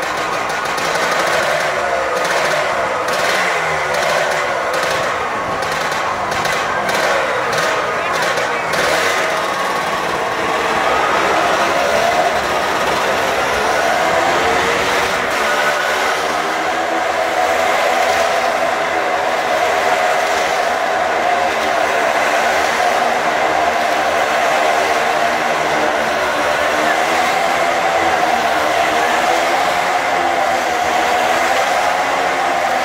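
Motorcycle engines revving, with repeated throttle blips through the first several seconds. From about the middle on, one engine runs steadily, its pitch rising and falling as the bike circles the vertical wooden wall.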